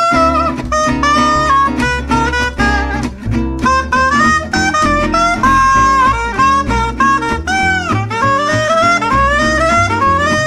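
Saxophone solo over a swing-jazz backing of bass, drums and guitar during an instrumental break, the sax line moving through runs with a bent, scooped note about three-quarters of the way through.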